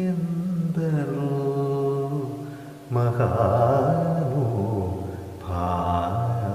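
Male Carnatic vocalist singing a Malayalam song in long held notes, with new phrases starting about a second, three seconds and five and a half seconds in.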